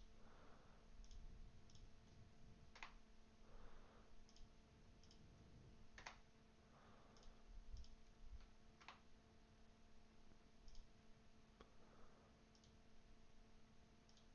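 Near silence with scattered faint computer mouse clicks, three of them sharper than the rest, spaced a few seconds apart, over a faint steady electrical hum.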